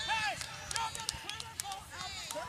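Several overlapping voices of players and spectators shouting and calling out across a soccer field, short rising-and-falling calls, with a few sharp clicks in between.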